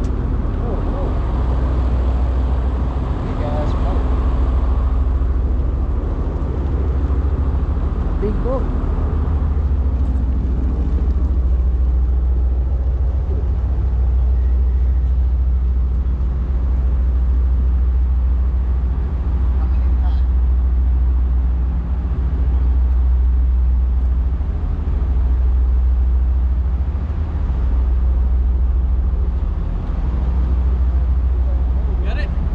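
Deep, steady rumble of ship engines close by, swelling and easing slowly in loudness, with a low hum that fades out about a third of the way through.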